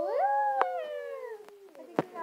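Two girls whooping "woo!" together, an excited cheer: one voice rises in pitch, then both hold a long, slowly falling note that fades out near the end.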